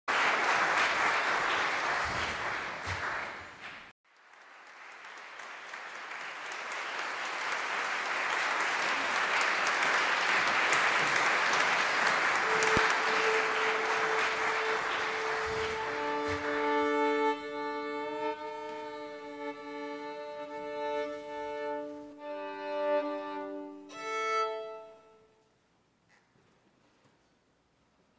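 Audience applause that dies away as a violin comes in on a long held A. The violin then tunes in fifths, sounding two open strings together in held pairs, a few seconds each.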